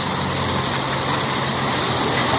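Water pouring down a stone retaining wall, a steady rush with a faint low hum beneath it.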